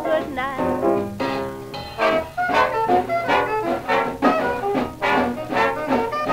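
A 1936 swing dance-band record played on a 78 rpm shellac disc: the orchestra's brass plays on at a fox-trot beat right after the vocal line ends.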